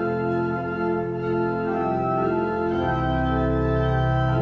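Organ played in sustained full chords, with a deep bass note joining about three seconds in.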